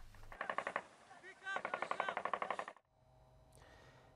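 Rapid automatic gunfire in two bursts, a short one followed by a longer one of roughly a second, with many shots a second. It cuts off suddenly near the end.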